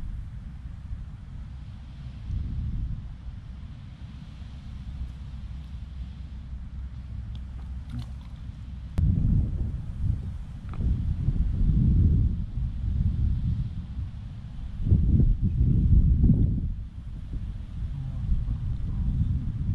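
Wind buffeting the microphone, a low rumble that swells in strong gusts about halfway through and again near the end.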